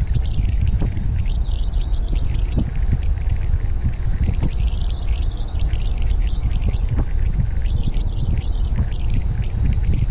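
Wind buffeting an action camera's microphone as a mountain bike rolls at speed down a paved road: a loud, steady rumble with a ragged hiss above it.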